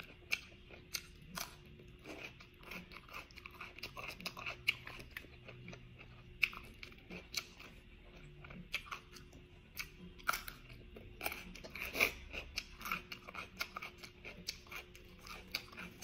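A person chewing crunchy food close to the microphone: irregular crisp crunches and mouth clicks throughout, with louder crunches about six and ten to twelve seconds in.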